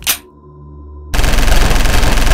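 Sustained rapid machine-gun fire from a light machine gun breaks out suddenly about a second in and carries on without letup, loud. Before it there is a brief sharp sound and a quieter moment.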